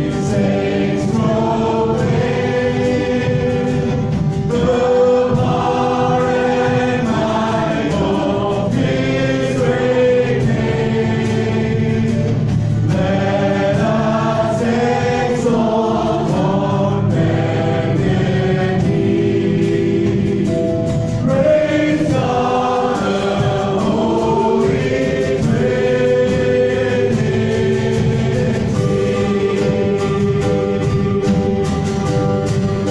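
Live worship band playing a song: a man and a woman singing into microphones over strummed acoustic guitar, electric guitar and a drum kit with a steady beat of drum and cymbal hits.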